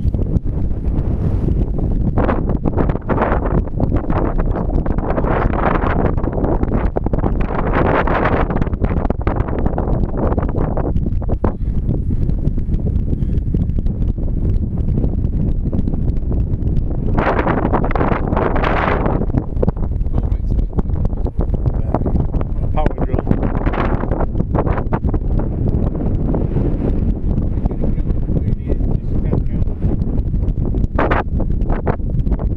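Strong, gusty wind buffeting the microphone: a steady low rumble with louder gusts that swell and die away several times.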